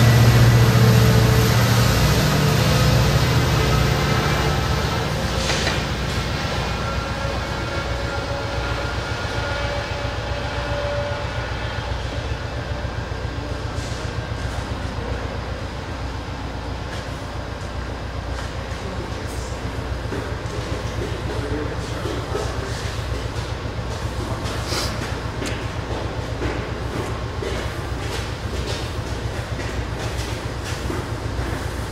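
Diesel commuter train at a station platform: the locomotive's engine drone is loud at first and fades over the first few seconds. Then comes a steady rumble of rolling cars, with scattered clicking of wheels over rail joints.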